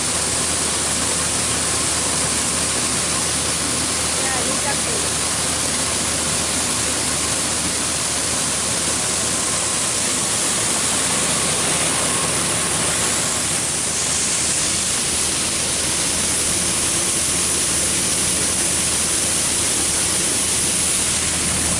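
John Deere 4400 combine running steadily while unloading soybeans through its auger into a grain truck: a constant machine drone under a hiss of pouring grain.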